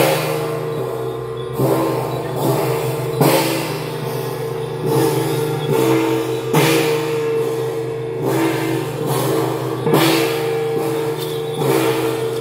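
Temple procession music: a held melody over gong and cymbal crashes that come about every one and a half seconds.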